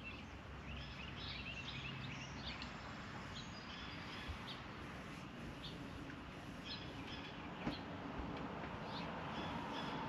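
Quiet outdoor background with small birds chirping now and then over a steady low noise, and two faint taps, about four and seven and a half seconds in.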